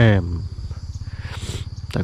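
A man's voice speaks briefly at the start and again at the end. Between the words there is a steady high-pitched insect drone, typical of crickets or cicadas, and a short hissy burst about one and a half seconds in.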